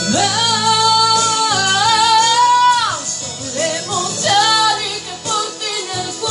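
A woman singing a terzinato (Italian liscio ballroom) song over a band backing track. She swoops up into a long held note with vibrato that falls away about three seconds in, then sings shorter phrases.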